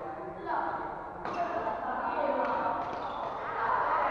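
A badminton racket hitting a shuttlecock with one sharp crack about a second in, with spectators chattering throughout.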